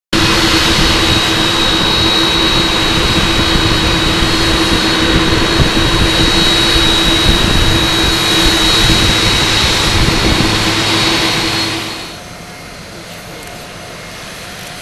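Jet engines of a Boeing VC-25A (747) taxiing close by: a loud, steady rushing roar with a high whine running through it. The sound drops away abruptly about twelve seconds in.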